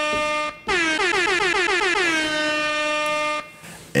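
Horn-like sound effect: a loud, steady, buzzy tone with a short break about half a second in, a rapid warble for about a second, then a steady hold that stops sharply about three and a half seconds in.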